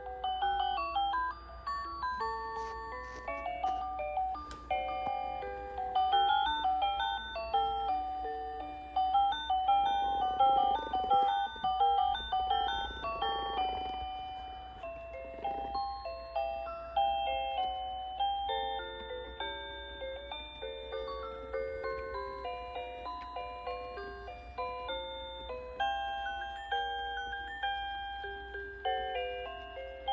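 A Mr. Christmas animated skating rink's built-in music playing a Christmas tune in short, clear single notes, over a low steady hum from the toy.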